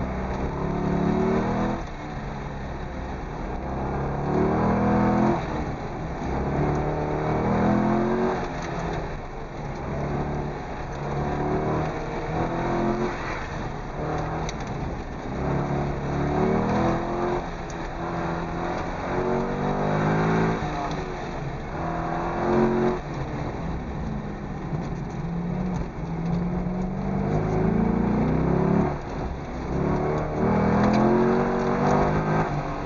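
Corvette V8 engine heard from inside the cabin, revving up and dropping back again and again every two to three seconds as the car accelerates and brakes through an autocross run.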